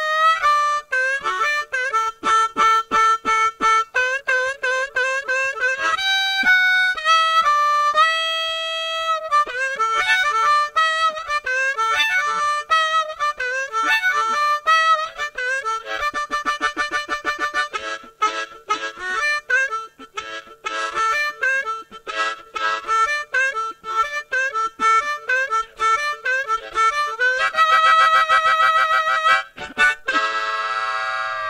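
Solo blues harmonica: quick rhythmic runs of short notes, a few held notes about six to nine seconds in, and a long pulsing note near the end.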